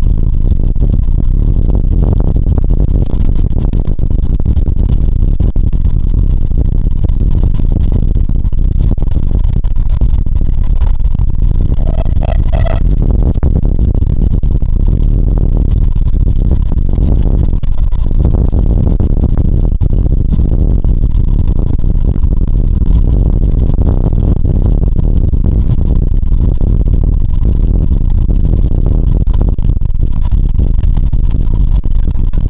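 Vintage BMT BU wooden gate car running along the tracks, heard from its open front end: a loud, steady rumble with rattling and clatter of the wheels over the rails. A brief high-pitched tone sounds about twelve seconds in.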